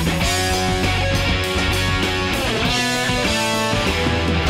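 Rock song with electric guitar over a heavy, steady bass line, some guitar notes bending in pitch.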